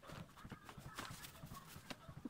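Irregular soft knocks and rustling from a phone being handled, with fabric brushing against the microphone.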